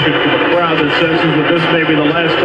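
A person's voice speaking, the words not made out.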